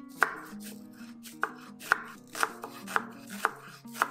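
Kitchen knife chopping an onion on a wooden cutting board: sharp knocks of the blade on the wood, roughly two a second, over background music.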